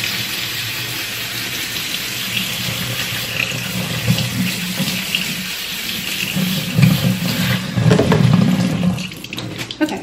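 Kitchen faucet running steadily into a stainless steel sink, cold water pouring through a fine-mesh strainer of rice being rinsed to wash off the starch. The flow falls away near the end.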